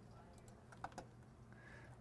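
Near silence with a few faint computer clicks around a second in, made while browsing a file dialog.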